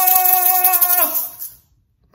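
Handheld shakers rattled fast and hard along with a woman's long, held roar in imitation of a tiger. The voice falls slightly in pitch and stops about a second in; the rattling stops soon after.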